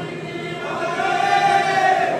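Devotional chanting by several voices. A long held note swells in the second half.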